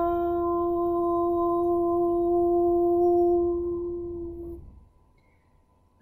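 A woman's voice holding a single sustained "ooo" tone at one steady pitch, a meditative toning in light language. It fades out about four and a half seconds in.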